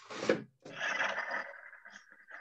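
Rubbing and scraping as something is shifted by hand: a short scrape, then a longer rub of about a second that fades out.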